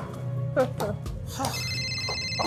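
A mobile phone ringtone starting about one and a half seconds in: several steady high tones sounding together, over background music.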